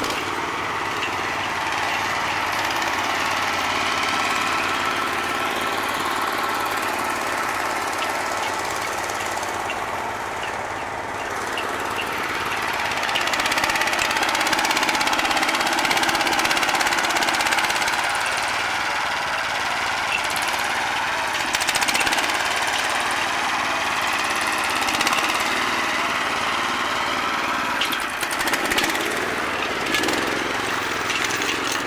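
Small engine of a homemade self-propelled drilling rig on chained, tracked wheels, running under load as the rig drives. It grows louder for several seconds a little before the middle, then settles.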